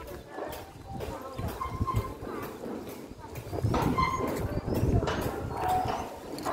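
Metal gate being unlatched and swung open: a run of clanks and knocks, heaviest around the middle and later part as the leaves swing.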